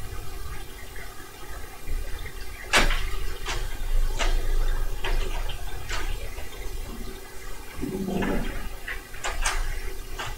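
Webcor Music Man portable reel-to-reel tape recorder running with a low rumble, with a series of sharp clicks as its control keys are worked. The reels spin but then stop, so the tape drive is not working properly.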